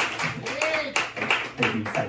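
A small audience clapping at the end of an acoustic guitar song, with a voice or two among the claps.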